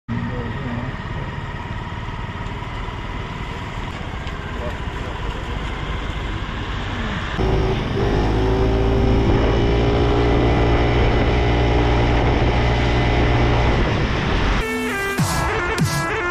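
Motor scooter running while ridden, with wind noise on the microphone; about halfway through its engine note grows louder with a steady low hum and gently shifting pitch. About a second and a half before the end it cuts to loud music with a beat.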